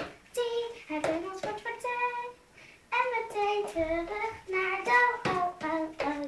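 A young girl singing unaccompanied: a run of short, steadily held notes with brief breaks between phrases.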